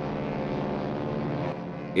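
Steady engine hum of a small propeller airplane in flight, played as a cartoon sound effect.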